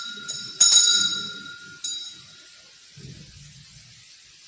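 Altar bells rung at the elevation of the consecrated host, in a few short shakes that ring and die away. The loudest shake comes about half a second in, and a last, lighter one near two seconds.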